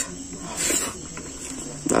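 A man chewing a handful of rice and curry, with a short breathy hiss about half a second in. A faint steady high whine runs underneath.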